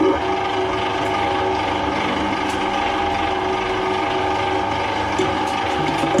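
Twin-shaft metal shredder comes on abruptly and runs empty, its rotating cutter shafts and drive making a steady mechanical whine with a grinding rattle underneath.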